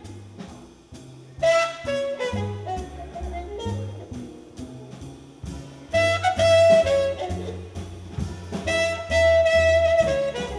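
Jazz big band playing a blues: upright bass walking under the drum kit while a trumpet leads, with the full horn section hitting loud ensemble chords about a second and a half in, again about six seconds in, and near the end.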